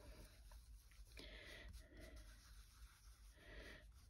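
Near silence with faint, soft rubbing of a sponge dauber working metallic gilding polish onto card in circles, swelling a few times.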